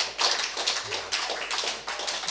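Small audience applauding: many hands clapping densely and irregularly.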